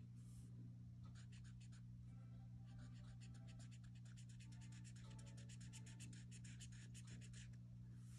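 Faint scratching of a felt-tip marker drawing on notebook paper, in quick short strokes from about a second in until near the end.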